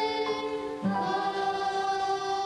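Boys' school choir singing held notes in harmony, moving to a new chord about a second in.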